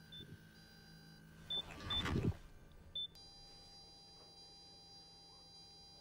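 Short high electronic beeps from lab computer equipment, with a brief whoosh about two seconds in as the loudest sound. From about three seconds in comes a steady electronic hum of several high tones.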